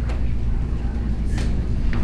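A steady low background hum, with a faint click about halfway through and another near the end.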